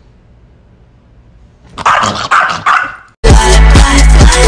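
A small dog barking, a quick run of sharp barks about halfway through after a quiet start. Loud electronic dance music with a steady beat cuts in suddenly near the end.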